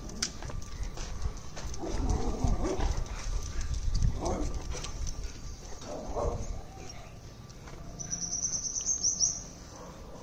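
Golden retriever moving about and sniffing on pavement, with a few irregular noisy bursts from the dog and footsteps. Near the end comes a high, rapidly repeated chirping trill.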